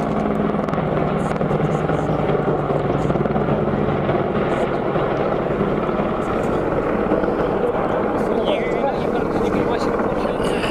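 AH-64 Apache attack helicopter flying overhead, its rotor and turbine noise loud and steady.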